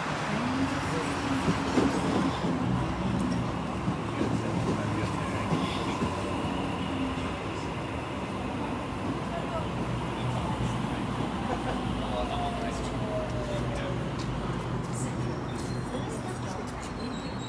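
Sydney Trains Waratah A-set double-deck electric train pulling into the platform and slowing, with a steady electric hum and a whine that falls in pitch as it brakes near the end.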